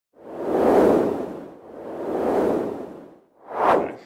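Whoosh sound effects from an edited intro: two long swells that rise and fade, then a shorter, brighter whoosh just before the end.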